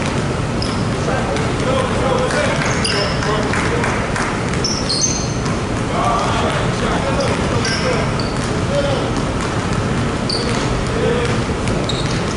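Several basketballs bouncing on a hardwood court in overlapping, irregular dribbles, with short high sneaker squeaks scattered throughout. Voices call out under the bouncing.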